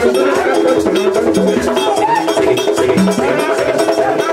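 Live Haitian Vodou ceremonial music: a man singing through a microphone over steady percussion, with a struck bell clanking out the beat.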